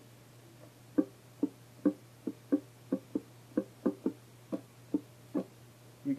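Ukulele strummed in a repeating pattern: upstrokes across the first three strings alternating with thumb downstrokes on the G string alone. About a dozen short, quickly fading strokes begin about a second in.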